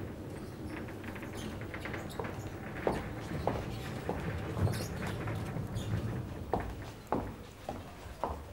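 Footsteps of a person walking across a lecture-hall floor, with a few light, sharp knocks scattered through.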